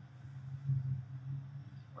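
A steady low hum with faint background noise underneath, and no distinct event.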